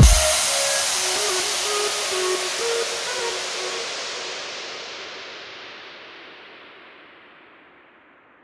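End of an electronic intro jingle: the dance beat stops and a bright hissing wash fades away slowly over several seconds, with a few soft synth notes in the first three seconds.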